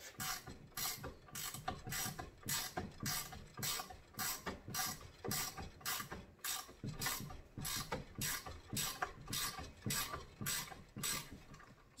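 A ratcheting wrench clicking in a steady run, about three clicks a second, as it threads a reusable hydraulic hose fitting into its hose end on fine threads.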